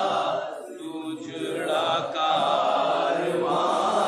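A group of men chanting a nauha, a Shia mourning lament, together in long held phrases led at a microphone, with a lull about a second in.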